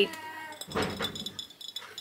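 A squeak from an item or its packaging being handled, then a brief scrape and scratchy crackling. It is a noise that grates on her.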